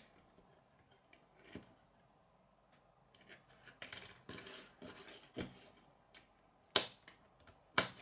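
Plastic K'nex rods and connectors being handled and snapped together: scattered light clicks and rattles, with two sharper snaps near the end.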